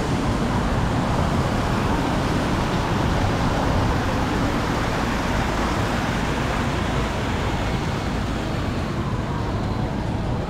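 Steady road traffic on a multi-lane city street: a continuous rumble of passing cars and trucks, with a faint slowly falling whine near the end.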